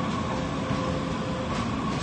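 Ticket vending machine's bill acceptor drawing in a dollar bill, a faint steady whir that stops about one and a half seconds in, over the steady rumble of a Muni metro station.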